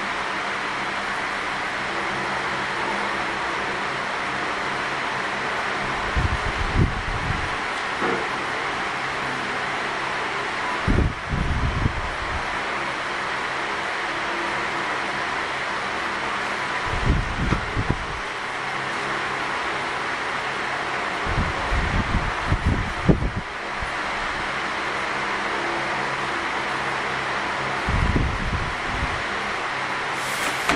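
Steady room noise and hiss with a faint hum, broken by about five short low rumbles of roughly a second each.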